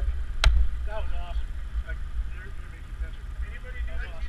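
People talking nearby, with one sharp click about half a second in, over a steady low rumble.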